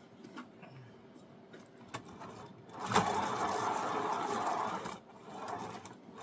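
A paint-pour turntable spun hard by hand with a wet canvas on it: a click about three seconds in, then a steady whirring rush for about two seconds that dies away. It was spun too hard.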